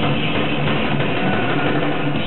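Live thrash metal band playing: heavily distorted electric guitar with bass and drums, loud and steady throughout.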